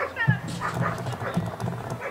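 German Shepherd Dog giving short, high, falling yelps as it breaks from a sit into a run, with voices underneath.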